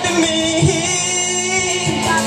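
Live rock band with electric guitars and drums playing loud and steady, and a singer holding one long note over it.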